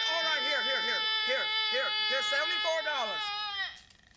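Exaggerated comic wailing and sobbing: one voice holds a long, steady wail while another sobs in quick bouncing gasps. Both cut off abruptly near the end.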